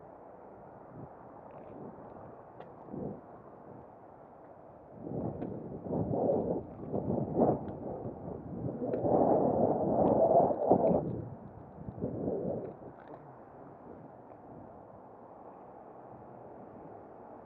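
Wind buffeting the camera's microphone in irregular gusts, starting about five seconds in and loudest about ten seconds in, dying away a couple of seconds later.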